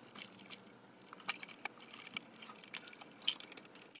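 Light, irregular metallic clicks and clinks from handling the wire connectors and metal parts of a turbo broiler's lid, the sharpest click about three seconds in.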